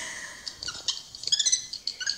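A small monkey chirping and squeaking: a run of short, high-pitched calls, thickest past the middle, played back through a screen's speaker.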